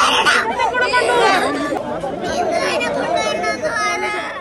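Several distressed voices, women talking over one another and a young boy crying, in an agitated huddle.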